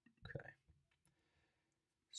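Near silence: room tone, broken by one short, faint sound about a quarter second in.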